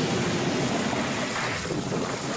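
Cartoon sound effect of foam erupting from a malfunctioning lab machine: a loud, steady rushing gush that eases slightly toward the end.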